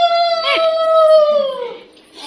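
Conch shell (shankha) blown in one long, steady note that sags in pitch and fades out near the end. A short falling, voice-like call cuts across it about half a second in.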